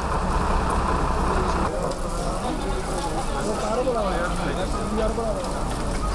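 Steady outdoor noise with a low rumble, like traffic or wind. From about two seconds in, indistinct voices rise and fall in the background. The texture changes abruptly about two seconds in.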